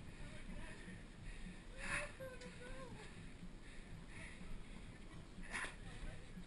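Faint outdoor background with a distant voice calling briefly, about two seconds in, and a few short bursts of noise, one with the voice and one near the end.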